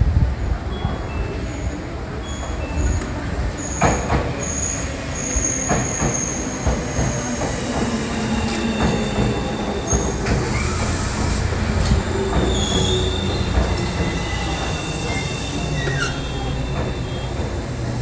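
Tobu Ryōmō limited express electric train pulling into the platform and slowing to stop, with a steady low rumble of wheels on rail. Short, high-pitched squeals of wheels and brakes come on and off, mostly in the first half.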